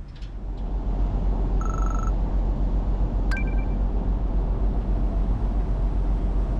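Ferry engines and churning propeller wash as the ship pulls away from the quay: a steady deep rumble that swells over the first second and then holds. A short high beep comes about two seconds in and a sharp click a second later.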